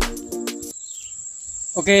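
Background music with a beat cuts off under a second in, leaving a steady, high-pitched insect trill, cricket-like, that runs on until a man starts to speak.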